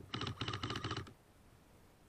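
A short full-auto burst from an airsoft rifle: about one second of rapid, evenly spaced clicks.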